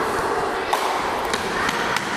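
Steady background noise of a large reverberant gymnasium, with a few brief light knocks spread through it.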